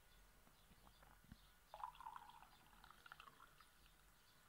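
Near silence: faint background ambience, with a few faint, brief chirpy sounds about two seconds in.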